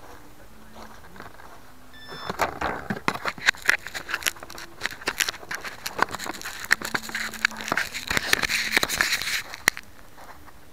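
Fingers handling a small 808 #16 keychain camera right over its built-in microphone: after a quiet stretch, a run of crackling, scraping and clicking rubs begins about two seconds in and stops just before the end.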